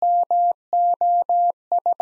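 Morse code sent as a single steady-pitched electronic beep at 17 words per minute, keyed on and off in long dahs and short dits, with brief gaps between letters.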